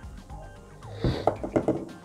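Quiet background music with a few light knocks about a second in, the sound of small hard-plastic vintage action figures being picked up and handled on a tabletop.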